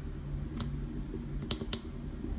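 Three light, sharp clicks, one about half a second in and two in quick succession about a second and a half in, over a low steady hum.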